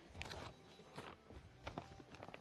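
Faint footsteps inside a motorhome: a few soft, scattered steps as someone moves from the cockpit into the living area.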